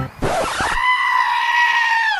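A short rush of noise, then one long, high-pitched scream held steady for over a second, dropping in pitch as it fades out.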